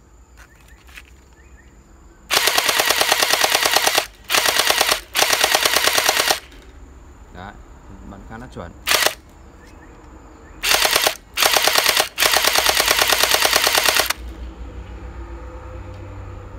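Toy M416 gel-ball blaster firing water-gel beads on full auto, its battery-powered mechanism cycling rapidly in about seven bursts, the longest nearly two seconds, with pauses between.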